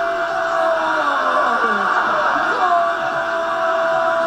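A football commentator's goal cry: a long drawn-out shout on one held pitch that fades out shortly after the start and rises again about two and a half seconds in, over background music.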